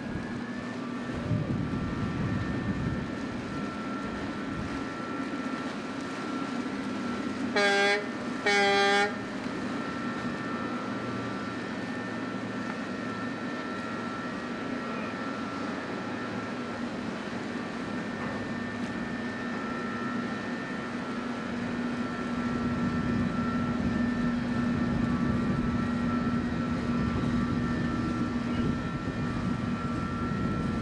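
Two short blasts of a vessel's horn, about a second apart, roughly eight seconds in, over a steady low drone.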